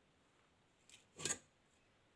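Mostly near silence, with one short scraping handling sound a little over a second in, preceded by a faint click.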